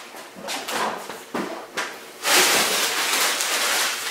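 A bag of ice being handled off camera: a few short rustles and knocks, then from about two seconds in a longer stretch of rustling.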